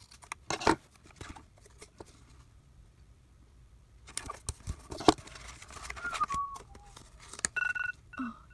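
Scissors snipping sticker paper and stickers being peeled and pressed down, with a sharp tap about five seconds in. Near the end a tablet's countdown timer alarm starts, a steady beeping tone marking that the time is up.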